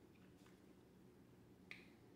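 Near silence: faint room tone, with one short, faint click near the end.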